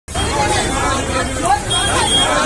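Several people's voices talking over one another: a street hubbub.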